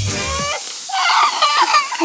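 Background music with a beat, cutting off about half a second in. Then come a toddler's short, high-pitched whimpering cries after falling face-first off a slide onto wood chips.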